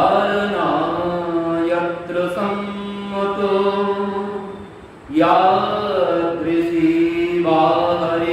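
A man chanting a devotional invocation into a microphone in long, drawn-out sung phrases, about four of them, with a brief breath about five seconds in.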